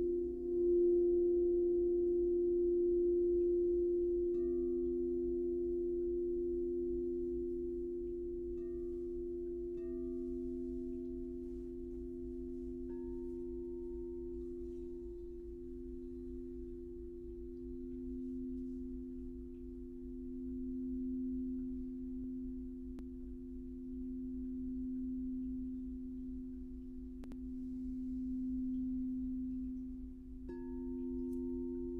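Crystal singing bowls ringing in two sustained, overlapping low tones, with fainter higher notes coming and going. The sound grows louder about a second in, then eases, and the lower tone swells and fades in slow waves.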